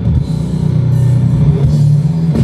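Loud heavy rock music from a band playing through a stage PA, with guitar, bass and drums.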